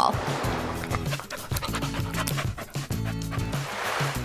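Background music with a dog panting over it, and a hiss of noise in the first second.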